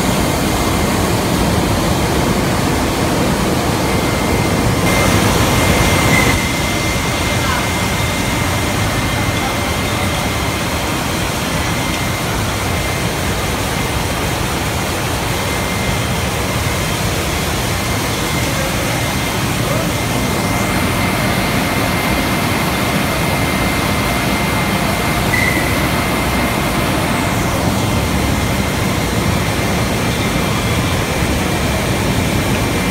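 Steady machine noise of a Simonazzi Bluestar rotary isobaric filler running, with a thin steady high whine over it. A brief louder hiss comes about five seconds in.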